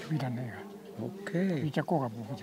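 A man's voice talking, in a conversation that the recogniser did not transcribe.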